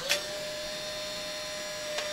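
Instant camera taking a selfie: a shutter click at the very start, then the small motor whirring steadily with one held tone as it ejects the print.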